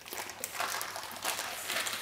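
Plastic zip-lock bag crinkling and rustling as it is pressed shut and handled, a dense run of small irregular crackles.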